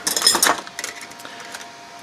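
Steel linear rods clinking against one another as a bundle is picked up off the bench. The clinks are sharpest in the first half second, then thin out to a few faint taps.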